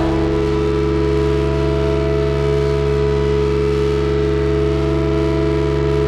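Modular synthesizer sustaining a steady drone of several held pitches, with no drum hits.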